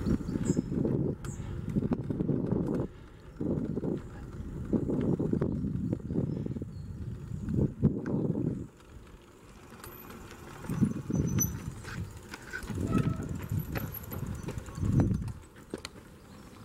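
Wind buffeting the microphone in irregular low rumbling gusts while riding a bicycle, stronger in the first half and more broken up after.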